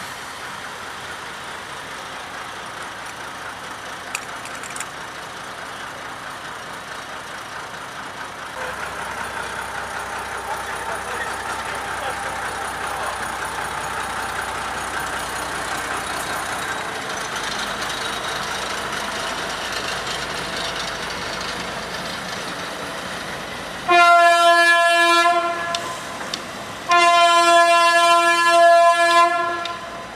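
Lxd2 narrow-gauge diesel-hydraulic locomotive's engine running steadily, growing louder about a third of the way in. Near the end its horn sounds two long blasts, the loudest sounds here.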